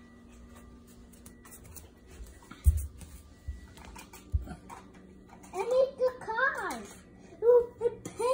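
A young child's voice, high-pitched, vocalizing in short phrases through the second half. Before it, a quiet stretch broken by two short low thumps.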